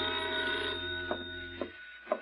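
A held brass music chord fades out, and near its end a telephone bell begins to ring in short bursts.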